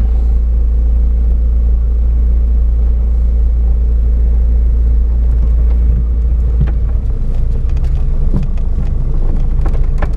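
Car cabin noise while driving on a broken, patched asphalt road: a steady low rumble of engine and tyres. From about six and a half seconds in, short knocks and rattles join it as the car rides over the rough surface.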